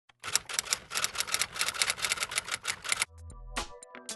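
Typewriter keys clacking rapidly, about eight strokes a second, for about three seconds. Near the end the clacking stops and electronic music begins with a low drone and held synthesizer notes.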